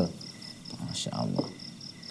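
A pause in speech filled by a faint, steady, high-pitched chirping made of rapid, evenly repeating pulses. A brief, soft sound from the speaker comes about a second in.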